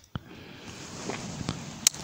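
Faint background noise with two short clicks, one just after the start and a sharper one near the end.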